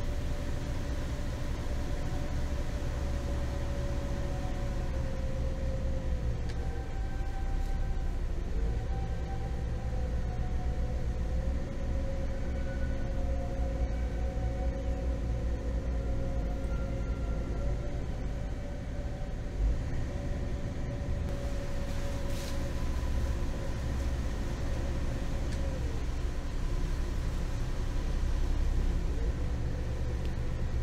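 A trawler yacht's twin inboard engines running steadily at slow cruising speed: a low rumble, with a thin higher tone above it that drifts slightly in pitch.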